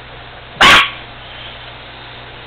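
A chihuahua gives a single short, loud bark about half a second in.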